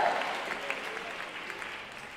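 Congregation applauding, the clapping dying away.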